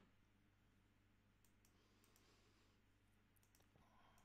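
Near silence: faint room hum with a few faint computer-mouse clicks scattered through the second half.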